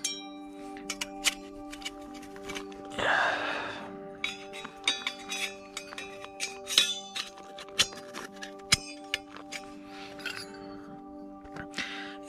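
Stainless steel camp stove parts clinking and tapping against each other as they are handled and fitted together, many light metallic clicks scattered throughout, with a rustle about three seconds in. Background music with steady notes runs underneath.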